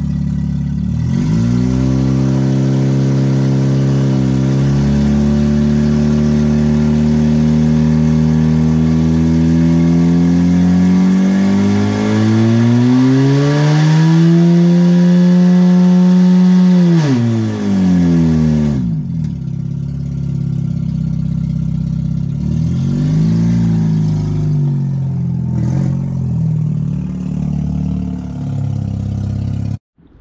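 A Mazda RX-8's rotary engine, its catalytic converter removed, is super loud as it revs hard and holds high revs for a one-wheel burnout, the spun tyre smoking. The revs climb further near the middle, drop sharply after about 17 seconds, then settle to an uneven idle with a few short blips.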